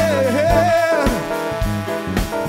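Live funk band playing, with drum hits about twice a second under bass, keys and horns. A singer's voice holds a wavering note over the band for about the first second.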